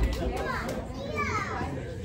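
Indistinct audience chatter with high children's voices standing out; no music playing.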